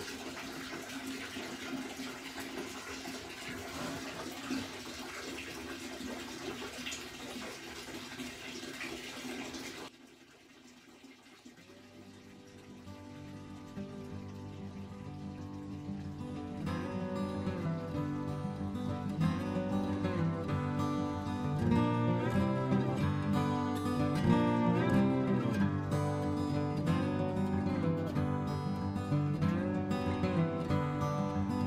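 Wort draining from a cooler mash tun, a steady run of liquid, for about the first ten seconds, then cutting off suddenly. Acoustic guitar music fades in after it and grows louder.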